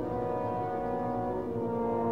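Orchestra playing slow, sustained chords in an interlude with no singing, the chord changing near the start and again about a second and a half in.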